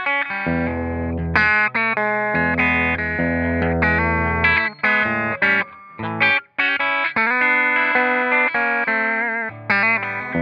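Fender American Professional Telecaster played on its V-Mod bridge pickup: a run of chords and picked notes with short breaks between phrases.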